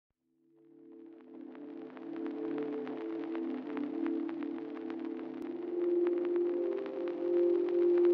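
Intro of a slow R&B/trapsoul instrumental beat: low sustained chords fade in over the first two seconds, with a scattering of faint crackling clicks on top and no drums yet.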